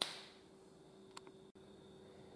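Near silence: room tone with a faint steady hum, opened by a brief sharp click that fades out quickly, and a tiny tick about a second in.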